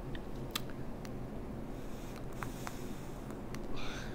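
Quiet room tone with a steady low hum and a few faint, scattered clicks, and a soft breath-like hiss near the end.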